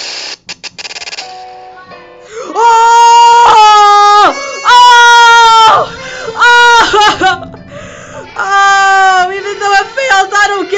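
A man wailing in long, loud, high-pitched cries, several held for about a second each and bending down in pitch at the end, in dismay at a timing that has gone wrong.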